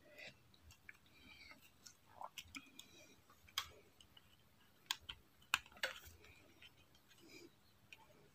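A handful of faint, short clicks from a stripped wire and a plastic double light switch being handled, as the wire is pushed into the switch's push-in terminals. The clicks fall between about two and six seconds in, with quiet around them.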